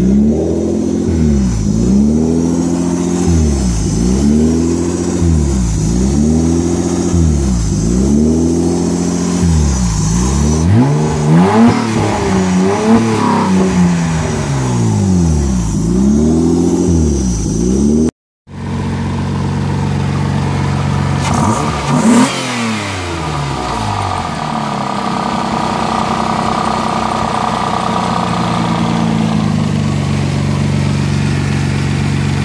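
Mazda KL-ZE 2.5 L V6 engine running with its revs surging up and down in an even rhythm, about once every second and a half: a hunting idle. After a cut it settles into a steady idle, with one short rev blip a few seconds later.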